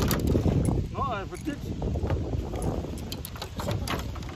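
Wind buffeting the microphone, with scattered sharp clicks and knocks and a brief voice sound about a second in.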